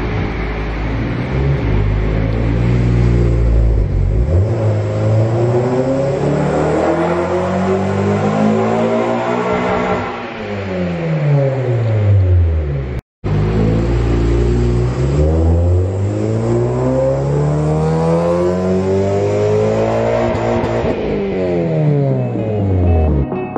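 Honda Civic Si's K24 four-cylinder, with an open K&N intake and the pre-cat removed, revving in two dyno pulls. Each time the pitch climbs steadily for about eight seconds as the engine winds out toward 7500 rpm, then drops as it comes off and winds down. A brief cut separates the two pulls, about halfway through.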